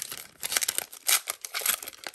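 Foil wrapper of a Bowman Chrome baseball card pack crinkling and crackling in bursts as hands handle it.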